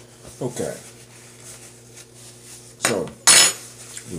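A brief, sharp clatter of something hard knocked or set down on the tabletop about three seconds in, over a steady low hum.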